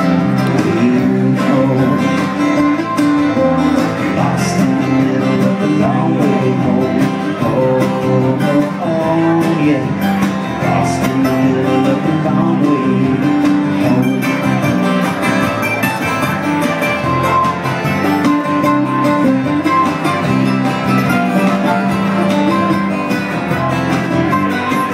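Live acoustic Americana band playing an instrumental break: mandolin and acoustic guitar picked and strummed, with a hollow-body electric guitar and drums behind.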